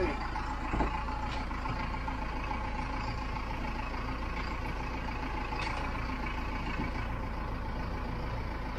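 Step-van bread truck driving slowly along a dirt track, heard from inside the cab: a steady drone of the running engine and cab, with a single knock about a second in.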